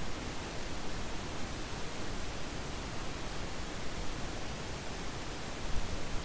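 Steady hiss of a microphone's background noise, an even haze with no other sound in it.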